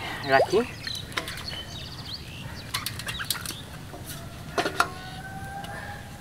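A freshly caught fish flapping and slapping in a plastic basin, in a few short bursts of sharp slaps. A brief bit of voice comes at the very start.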